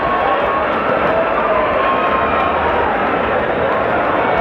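Loud, steady hubbub of an indoor arena crowd, many voices talking and shouting at once.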